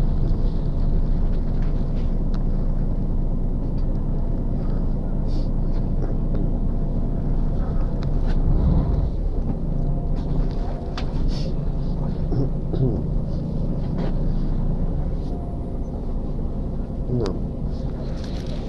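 Street noise: a steady low rumble of traffic, with indistinct voices and a few small clicks from people walking past.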